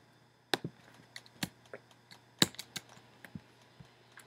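Faint, irregular clicking of computer keys, a dozen or so separate clicks, the loudest about two and a half seconds in.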